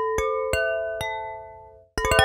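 A wine-glass sampler instrument, built from a single recorded tap on a wine glass, played from a keyboard. Three notes at different pitches, each a clear ringing tone with a sharp strike, die away by the end.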